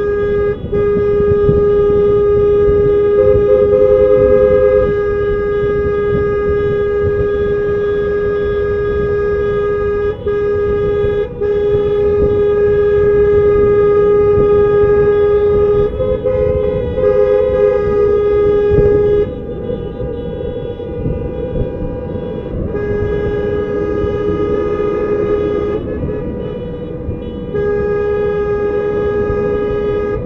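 Car horns held down in long continuous blasts: one steady horn sounding almost throughout, with a second, slightly higher horn joining briefly a few seconds in and again about halfway. The horns stop for a few seconds about two-thirds of the way through and again near the end, leaving road and engine rumble underneath. Protest honking.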